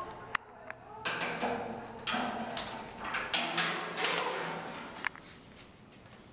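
Indistinct, low voices with no clear words, and one sharp click just after the start.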